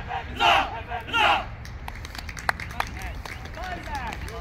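The end of three cheers from a team of men shouting together: loud shouts about half a second and just over a second in. A few sharp claps and low talk follow.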